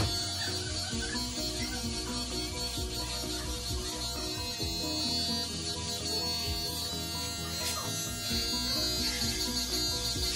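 Electric hair clippers buzzing steadily as they cut a boy's short hair, under background music with a repeating beat.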